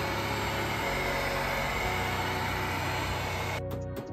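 Heat gun running steadily, blowing hot air onto the steel fender lip to reheat it before hammer rolling. Near the end it cuts off suddenly and music with a quick, regular beat starts.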